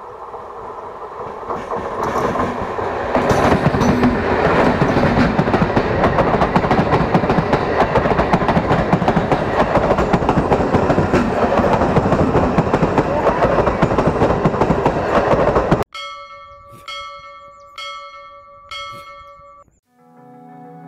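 An Indian Railways passenger train approaches and passes close by, its coach wheels rumbling and clattering over the rails. The sound builds over the first few seconds and stays loud until it cuts off suddenly near the end, where music takes over.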